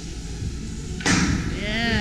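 A sudden knock or rattle about a second in, then a person's voice shouting or cheering with a pitch that rises and falls, over a steady low background rumble.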